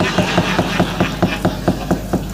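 Rapid, even knocking of a wayang kulit dalang's wooden cempala against the puppet chest and keprak plates, about eight strikes a second, over a low steady hum.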